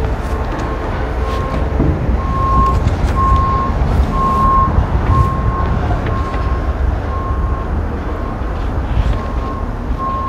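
Vehicle backup alarm beeping steadily, about one and a half beeps a second, loudest in the middle and then fading, over a low rumble of engine and traffic noise.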